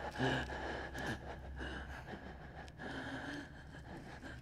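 A person gasping and breathing hard in strained, uneven breaths, over a steady high tone and a low hum.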